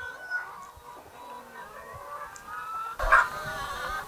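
A flock of egg-laying hens calling and clucking, with drawn-out, wavering calls. A brief louder burst comes about three seconds in.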